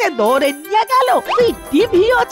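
A cartoon woman's voice speaking in quick, rising and falling bursts over background music with a high jingling tinkle.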